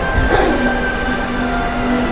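Soft background music with long held notes that change from one to the next, played back in a room over a steady low rumble, with a brief faint blip about a third of a second in.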